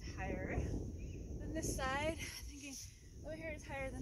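A woman's voice making three short utterances, the middle one sliding sharply in pitch, over a steady low rumble of wind on the microphone.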